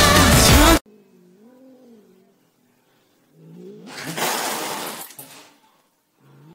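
A pop song with singing cuts off under a second in. A cat follows with a faint, wavering low yowl, a pause, then a louder hissing, growling outburst about three and a half seconds in, aimed at a puppy that is afraid of it.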